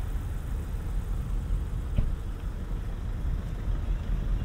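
Steady low rumble of outdoor quayside background noise, with one sharp tap about halfway through.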